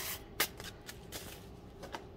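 Sheet of plastic bubble wrap being picked up and cleared away by hand: a quiet crinkling rustle with one sharp click about half a second in, then a few lighter ticks.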